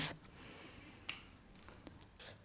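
Felt-tip marker pen being handled on a tabletop: one sharp click about a second in, then a few faint taps.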